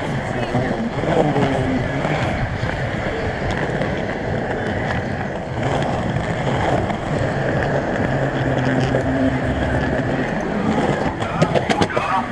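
Skateboard wheels rolling over concrete paving, a continuous rolling noise, with a quick run of sharp clicks shortly before the end.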